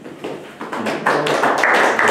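Small audience applauding at the end of a talk, the clapping building up to a steady patter in the second half.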